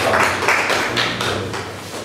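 Applause from a small group of people clapping by hand, a dense patter of claps that dies down over the last second.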